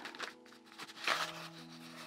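Soft background music in a gap between words: a few quiet held notes, with a lower note coming in about a second in.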